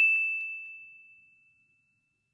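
A single high, bell-like ding, struck just before and ringing on one clear tone as it fades away within about a second.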